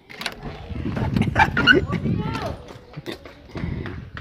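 Indistinct voices in the background with scattered knocks and clicks, as of a phone being handled while it films.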